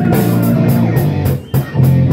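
Live rock band playing: electric guitar chords over a drum kit, with a cymbal hit about four times a second.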